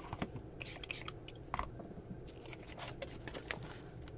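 Faint, scattered crackles and taps of sheets of sprayed, stenciled paper being handled, clustered in the middle stretch.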